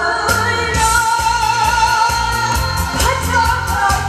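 A singer holds one long, wavering note, then starts a new phrase, live over an amplified backing track with a steady drum beat and bass.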